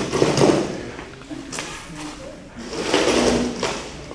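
Broken concrete blocks and chunks scraping and clattering as they are picked up and moved off a tarp, in two noisy bursts: one at the start and one about three seconds in.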